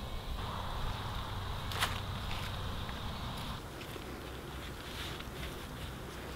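Faint scuffing and rustling of hands working loose soil around a freshly planted lemongrass stalk, with a single sharp tick about two seconds in.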